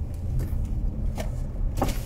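Low, steady rumble of a motor vehicle, with a few faint clicks.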